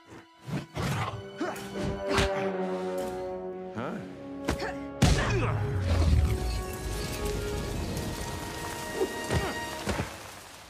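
Film score under fight sound effects: a run of sharp hits through the first half, then a heavy impact about five seconds in followed by a low rumble, with more hits near the end.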